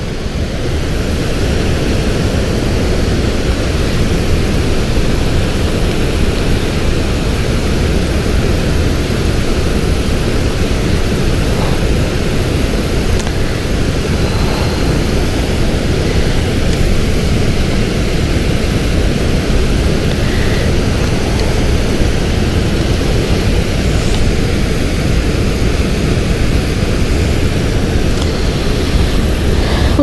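A steady, loud rushing roar with no break, heaviest in the low end.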